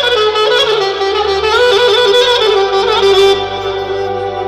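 Clarinet playing a fast, ornamented melody through a PA, with quick runs and turns between notes. Sustained low keyboard notes sound underneath, shifting to a new chord about one and a half seconds in.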